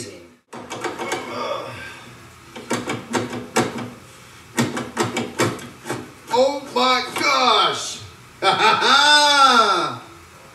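A series of light clicks and knocks from handling sheet metal, then two long wordless vocal sounds that rise and then fall in pitch, the second louder.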